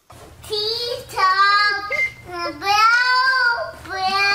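A small child's high voice singing without clear words, in a few long, held notes that waver slightly in pitch.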